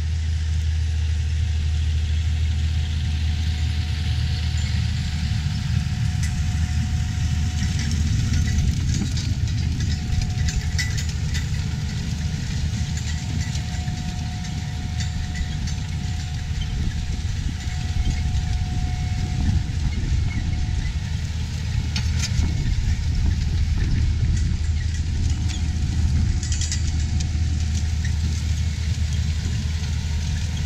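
John Deere 7830 tractor's six-cylinder diesel engine running steadily under load as it pulls a corn planter.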